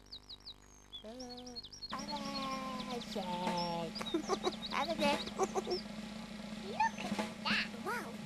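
Birds chirping with quick, short, high notes, joined about two seconds in by a busier run of gliding, warbling calls over a steady low hum.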